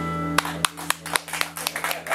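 A band's final held chord on electric guitar and bass, ringing until it is cut off about half a second in, followed by scattered audience clapping.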